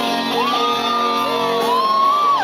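Live rock band playing, with sustained electric guitar chords, and voices shouting and whooping over the music.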